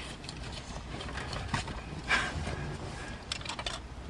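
Child car seat harness being fastened: straps rustling and a few light clicks of the buckle and clips.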